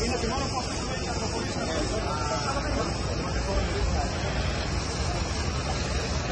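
Steady rushing noise of road traffic, with faint, indistinct voices of people talking.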